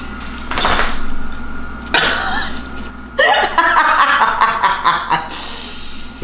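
People laughing: a couple of breathy bursts, then a longer run of voiced laughter in the middle.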